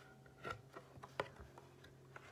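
Page of a picture book being turned by hand, giving a few faint sharp ticks and taps, the clearest about half a second and just over a second in, over a low steady hum.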